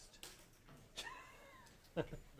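A faint, distant voice from the audience calls out one drawn-out word, 'vase', about a second in, its pitch rising and then falling.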